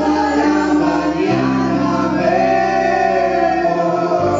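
Live band playing, with voices singing over sustained low bass notes; the bass note changes about a second in.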